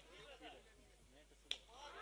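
Near silence, with very faint voices in the background and a single faint click about one and a half seconds in.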